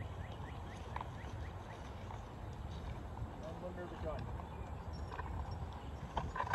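Outdoor field ambience: faint voices of people talking nearby over a steady low rumble, with a quick run of small high chirps in the first second.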